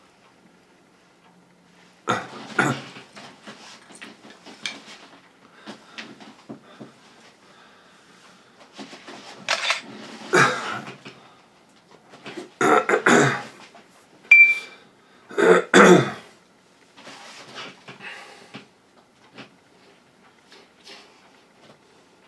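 Close handling noise of a camera or microphone being handled: irregular rustles, knocks and scrapes in several loud bursts, with a short high beep about 14 seconds in.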